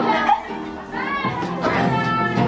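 Acoustic guitar being played while a group of young people's voices sing and call out over it. The music drops away briefly about half a second in, then the voices come back.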